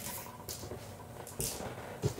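Faint movement and handling noise: a few light taps and a brief rustle about one and a half seconds in, over steady room hiss.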